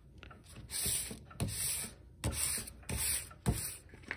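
Sandpaper on a sanding block rubbed across a flat engraved brass dial plate in about five hissing strokes, scouring off the remaining tarnish so the silvering will take.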